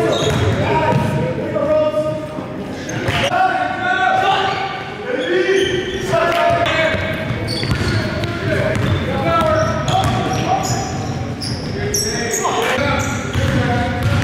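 A voice singing in held, gliding notes over a steady low beat, as in a song's vocal line.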